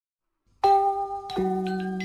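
Intro jingle of struck, bell-like notes: after about half a second of silence a ringing note sounds, then a lower note that rings on.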